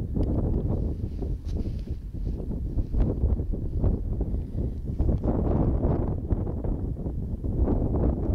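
Wind buffeting the microphone, a low rumble that rises and falls in gusts.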